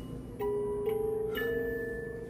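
A short melody of held, bell-like chiming notes, set off by pressing the button on the hotel room's lit nightstand lamp.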